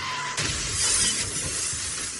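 Car crash: a loud, noisy wash of breaking glass and crunching impact that grows heavier about half a second in.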